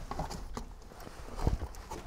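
Galvanized steel lid of a trash-can kiln being pried loose with a metal tool and lifted off: a run of light metal clinks and scrapes, with a louder knock about a second and a half in.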